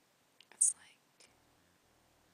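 A brief whispered word about half a second in, opening with a sharp hiss, then a faint click; otherwise quiet room tone.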